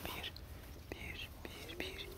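Faint whispering close to the microphone, with a few soft clicks of handling. A faint steady tone comes in near the end.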